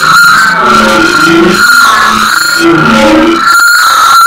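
Loud, heavily distorted electronic audio effect: a steady high whine with a low wavering tune moving beneath it.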